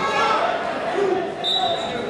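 Several voices shouting and calling out, echoing in a large gymnasium, with a brief high-pitched squeak about one and a half seconds in.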